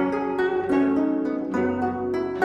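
Gayageum, the Korean plucked zither, playing a melody of single plucked notes, a few each second, each ringing and fading before the next, over a steady low bass note.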